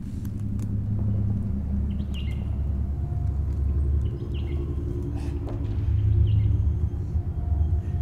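A low, steady rumbling drone, swelling slightly around six seconds in, with a few short bird chirps above it in the forest ambience.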